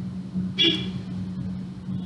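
Steady low hum in the recording, with a short breathy sound about half a second in.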